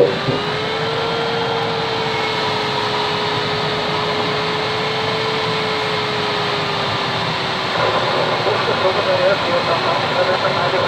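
Rushing airflow over a Pilatus B4 glider's cockpit in flight, with a steady whistle that drifts gently up and down in pitch. About eight seconds in, the whistle breaks off and the sound grows louder and more uneven.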